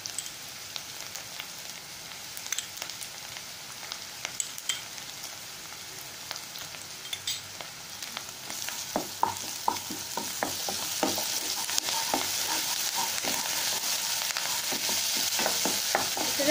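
Chopped shallots and curry leaves sizzling in oil in a nonstick kadai. About halfway through the sizzle grows louder, and a wooden spatula repeatedly knocks and scrapes against the pan as the mixture is stirred.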